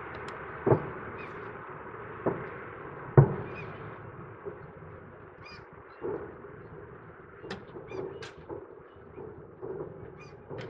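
Distant fireworks shells bursting: three booms in the first few seconds, the loudest about three seconds in, each trailing off in an echo. Smaller pops and crackles follow in the second half.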